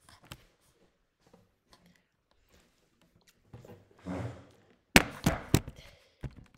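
Handling noise from the camera or laptop being picked up and moved. A soft scuffle comes about four seconds in, then four or five sharp knocks and thumps close together near the end, the loudest sounds here.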